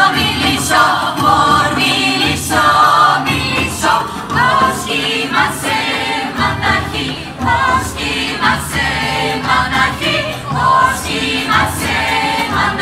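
A workshop choir of mixed voices singing a Greek or Balkan folk song in parts, with a drum keeping a steady beat.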